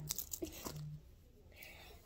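Plastic packaging crinkling in hand, a few short crackles in the first half second, then quieter.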